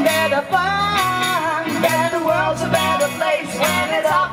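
Live pop-rock band playing: female vocals over bass, guitar and drums keeping a steady beat.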